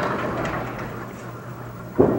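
Candlepin bowling alley ambience: a diffuse din from the lanes that fades over about a second and a half, over a steady low hum. A sudden louder sound starts right at the end.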